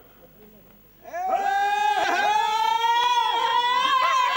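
A high sung voice starts about a second in and holds one long note whose pitch slowly rises, in the manner of an Amazigh izli (izlan) sung call. Other voices briefly sound alongside it.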